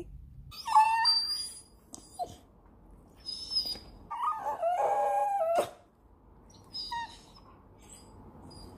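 A Staffordshire bull terrier whining in a series of four high, wavering calls. The longest lasts about a second and a half, starting around four seconds in.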